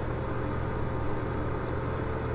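Steady low hum with a faint even hiss, unchanging throughout.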